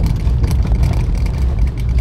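Steady low road and engine rumble inside the cabin of a moving car.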